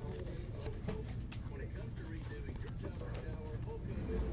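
Baseball trading cards being shuffled and flipped by hand: many small, irregular ticks and slides of card stock against card, over a low hum.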